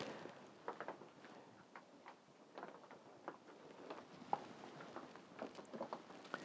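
Hot water poured from a glass kettle through trays of potting soil, faintly trickling and dripping with scattered small irregular ticks. The near-boiling water is soaking the soil to kill fungus gnats and their eggs.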